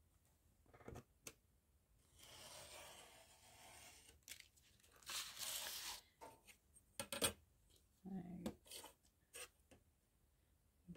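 Snap-off craft knife drawn along a steel ruler, slicing through a paper-collaged board on a cutting mat: a long, soft scratchy cutting stroke, then a shorter, louder one, followed by a few light clicks and taps.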